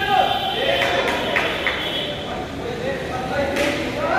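Men's voices shouting and calling out in a large echoing hall, with a few sharp impacts of blows landing, about four in all.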